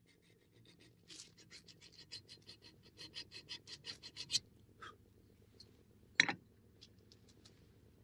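Wire being twisted and scraped onto a metal pole with pliers: a quick run of scratching strokes, about five a second, then a few separate clicks and one louder click about six seconds in.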